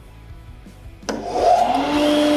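A dust extractor switched on by remote: a click about a second in, then its motor spins up, the hum rising in pitch and settling into a steady drone with rushing air.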